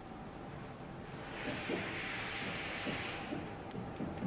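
Labelling machine mechanism running with irregular low knocks and rumble from about a second and a half in. A hiss lasts about two seconds in the middle.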